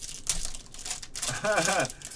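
Foil pack wrapper crinkling and crackling as gloved hands pull it open, followed near the end by a short laugh.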